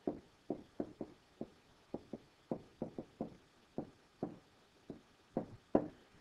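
Stylus tapping on a tablet's screen while handwriting a word: about fifteen short, light knocks at an uneven pace, a couple per second.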